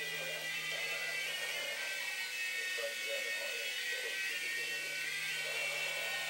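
Small electric toy RC helicopter's motor and rotors running with a steady high whine as it hovers, the pitch settling just as it lifts off.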